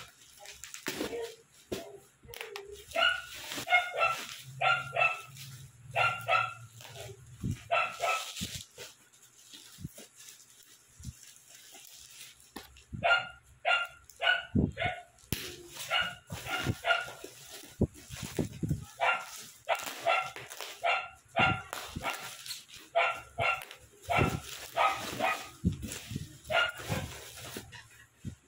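A dog barking again and again in runs of short, fairly high-pitched barks, with pauses between the runs. Underneath, plastic wrapping crinkles and crackles as a parcel is cut open by hand.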